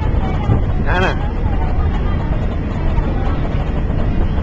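Steady low rumble of a passenger ferry under way, mixed with wind on the open deck, with a short high voice about a second in.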